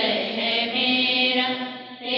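Church congregation singing a hymn together in slow, sustained lines, a held phrase tapering off near the end.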